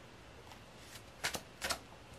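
Tarot cards being handled: two brief card flicks or rustles a little over a second in, about a third of a second apart, over faint room tone.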